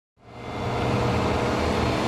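Delivery truck engines running, a steady low rumble with hiss that fades in over the first half second.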